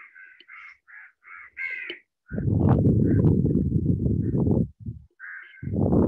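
An animal calling, about six short harsh calls in quick succession, then one more about five seconds in. Between them comes a louder low rustling noise lasting about two seconds.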